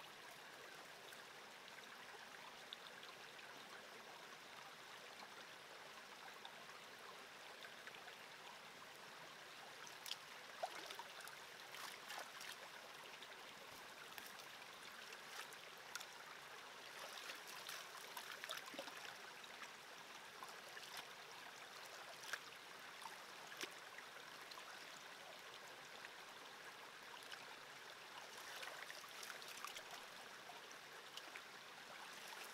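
Small creek running over rocks, a faint steady water sound. From about ten seconds in, occasional soft splashes and clicks come from a gold pan of sand and gravel being worked in the water.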